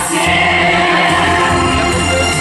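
A mixed group of men and women singing an anthem in chorus through microphones, over amplified instrumental accompaniment with a steady bass.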